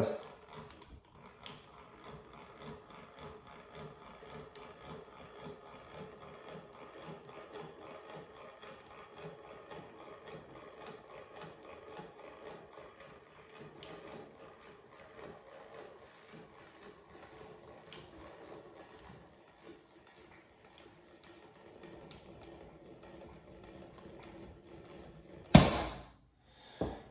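Handwheel of a manual force test stand being cranked slowly, a faint steady mechanical sound as it pulls 100 lb monofilament fishing line tight. Near the end the line breaks with one sudden loud snap at 99.8 pounds.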